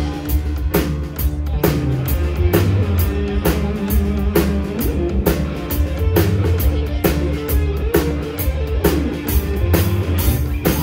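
Live rock band playing an instrumental passage: drum kit keeping a steady beat under electric guitars and keyboard, with no vocals.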